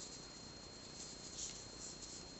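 Quiet room tone with a faint steady high-pitched whine, and a soft short rustle about one and a half seconds in from hands working yarn and a crochet hook.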